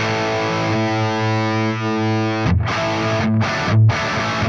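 Gibson Les Paul electric guitar played with heavy distortion: a chord left to ring for about two seconds, then short muted chugs with brief stops between them.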